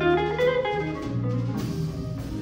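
Live jazz big band playing: a melodic line of short notes over double bass and drum kit, with occasional cymbal strokes.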